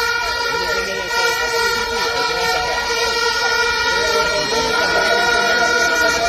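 Demonstration crowd: many voices under a steady, sustained horn-like tone that holds throughout.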